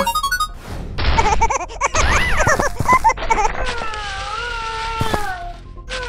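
Cartoon soundtrack of music and sound effects, with a few thuds in the first half. From about halfway in, a long, wavering, whining vocal cry takes over.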